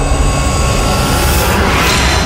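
Cinematic logo-intro sound effects: a loud, rumbling, jet-like whoosh that swells toward the end.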